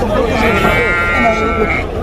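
A sheep bleats once, one long call lasting about a second and a half, over people talking in the background.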